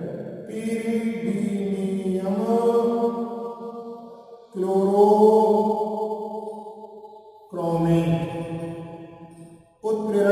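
A man's voice drawing out three long, held syllables in a chant-like sing-song, each lasting two to four seconds with a short break between them.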